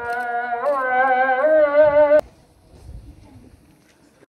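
A single voice chanting Islamic prayer in long, wavering, ornamented held notes; it breaks off suddenly about two seconds in, leaving only faint background sound.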